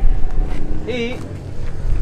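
Wind buffeting the microphone outdoors, a steady low rumble, with a brief spoken sound about a second in.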